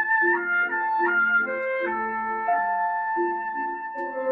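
A small chamber ensemble of bassoon, a second woodwind and piano playing a slow passage, with held wind notes that move to new pitches every half second to a second over the piano.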